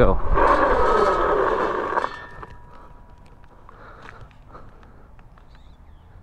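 A WindOne K2 fat e-bike tyre locks up under hard hydraulic disc braking and skids on asphalt, giving a loud squealing skid with rushing noise. It cuts off abruptly about two seconds in as the bike comes to a stop.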